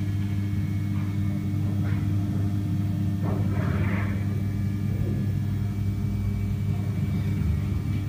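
A steady low hum runs throughout, with a soft rustle about three to four seconds in.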